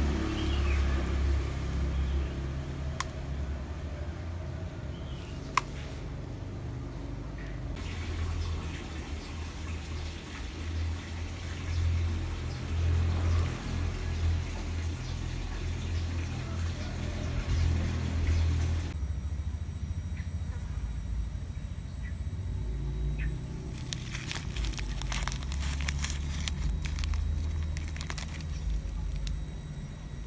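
Low, steady rumble on a handheld microphone, with scattered clicks of handling noise and a dense run of clicking and rustling about three-quarters of the way through.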